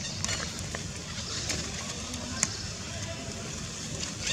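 Outdoor background sound: a steady low rumble with faint distant voices and scattered small clicks, the sharpest click about two and a half seconds in.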